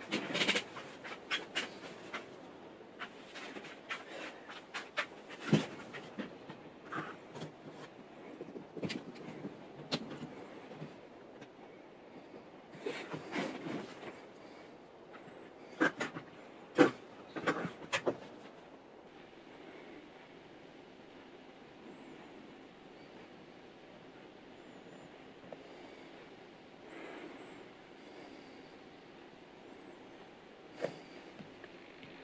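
Hands handling a small camera drone and its USB cable, unplugging it and plugging it back in: a run of sharp clicks and short rustles through the first two thirds, then faint and quiet.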